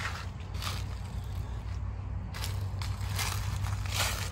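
Footsteps crunching through dry fallen leaves, a few separate steps, over a steady low rumble.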